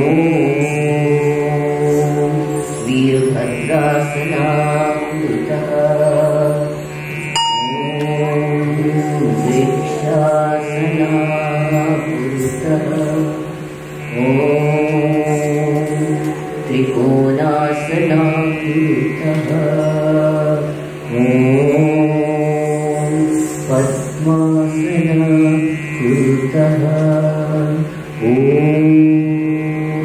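A voice chanting a mantra in short melodic phrases that repeat every few seconds, each opening with an upward slide, over a steady low drone.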